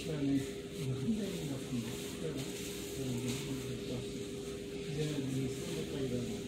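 Indistinct talk among people waiting on the platform, over a steady unbroken hum.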